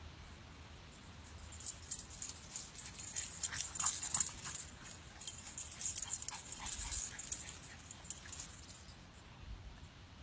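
Boston Terrier puppy running back over grass with a tennis ball in its mouth, a busy patter of quick, light, high clicks and rustles that builds to its loudest in the middle and dies away near the end.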